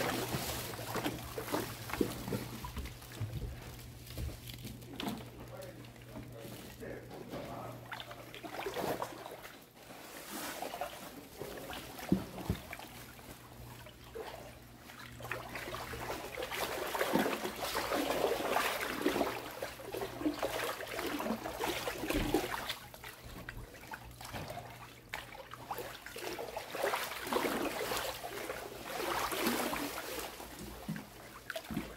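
Floodwater sloshing and trickling as someone wades across a flooded shop floor, with indistinct voices and a steady low hum underneath.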